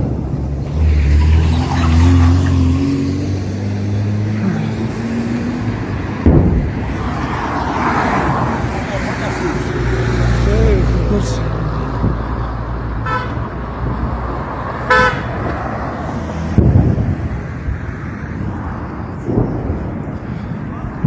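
Street traffic: a car engine running close by, a couple of short car horn toots, and a few sharp thuds, the loudest about sixteen seconds in.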